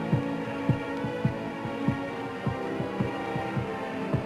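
Suspense film score: sustained low held tones over a steady heartbeat-like pulse, a little under two beats a second, each beat dropping in pitch.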